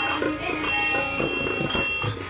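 Devotional bhajan singing kept in time by small hand cymbals (talam) struck about twice a second, each strike ringing on until the next.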